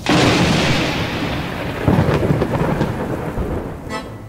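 Thunder rumbling over rain, starting suddenly and surging again about two seconds in.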